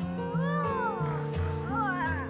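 Background music with a steady beat, over which a cat meows twice: a long rising-and-falling meow about half a second in, then a shorter wavering one near the end.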